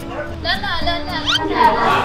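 Quick rising, squeaky pitch glides over a steady low tone, giving way about a second and a half in to loud dance music mixed with voices.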